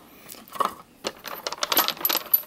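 Polished stones clicking and clinking against one another as a hand rummages through a drawerful of them. The clicks come as a quick, irregular run that grows denser in the second half.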